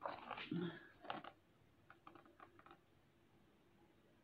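Pages of a hardback book being turned and handled: a bunch of rustles and taps in the first second or so, then a few lighter clicks.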